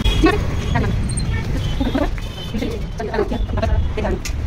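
City street ambience: a steady low traffic rumble with scattered short, high sounds above it.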